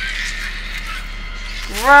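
A horror TV episode's soundtrack playing quietly: low, tense background music.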